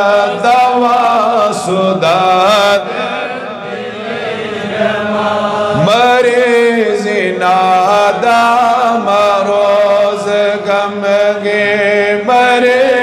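A man's solo voice chanting a Kashmiri naat, a devotional poem in praise of the Prophet, through a microphone in long, wavering melodic phrases, with a brief dip in level about four seconds in.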